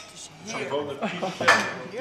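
Knife and fork clinking and scraping on a plate as meat is cut, with one sharp clink about one and a half seconds in.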